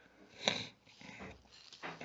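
A pause between spoken phrases, mostly quiet, with a short sniff about half a second in and a faint breath just before speech resumes.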